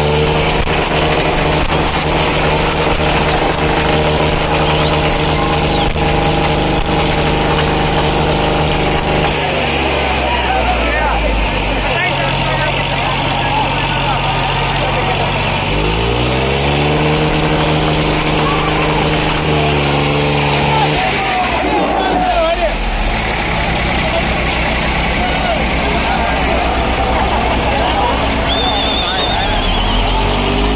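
Tractor diesel engines running hard amid a shouting crowd. The engine note sags about twelve seconds in, then revs back up several times with rising pitch.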